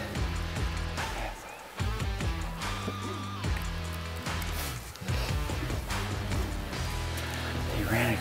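Background music: a steady bass line with a regular beat.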